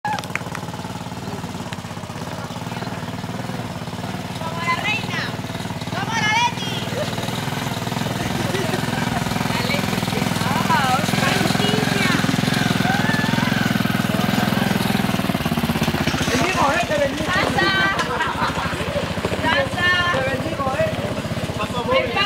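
The small engine of a SKYGO cargo motor tricycle running as it drives along, its steady rumble growing louder toward the middle and fading after about fifteen seconds. Over it, the people riding in the open back shout and cheer in several bursts.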